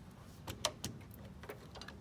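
A few faint sharp clicks of hand tools being handled at a wire, three close together about half a second in and fainter ones near the end: wire cutters and a wire stripper working on the fuel pump's positive wire.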